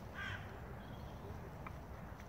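A single short bird call a moment after the start, over a steady low outdoor rumble, with a faint click about halfway through.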